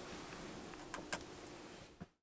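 Quiet room tone: a faint steady hum and light hiss, with two soft clicks about a second in.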